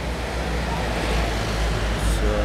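Road traffic noise from a passing motor vehicle: a steady low rumble that swells slightly through the middle.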